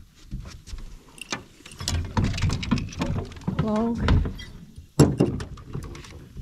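Clicks and rustling from a small fish and tackle being handled over the side of a boat, with a sharp knock about five seconds in, the loudest sound.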